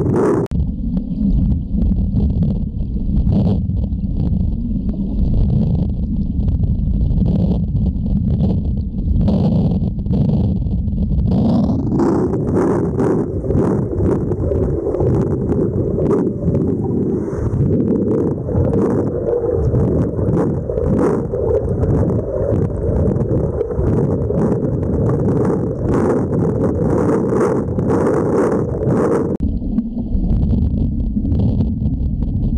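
Underwater pool noise: a loud, constant rumble of churning water and bubbles from a swimmer's freestyle strokes and kicks, picked up by a submerged camera. The sound shifts to a slightly brighter, busier churning about twelve seconds in.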